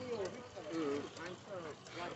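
Two Beyblade spinning tops circling in a plastic stadium, with faint light knocks, under soft talk.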